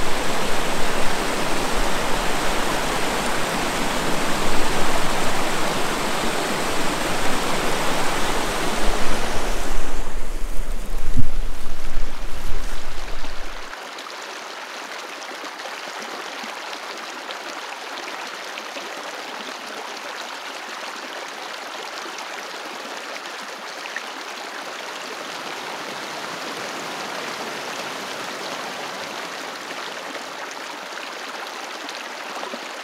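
Mountain creek flowing: a loud rush of water for about the first fourteen seconds, then, after a sudden drop, a quieter, steady flow.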